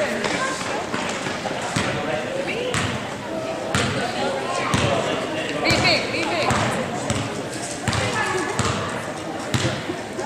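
A basketball dribbled on a hard gym floor, bouncing about once a second at a walking pace, with voices chattering in the echoing gym.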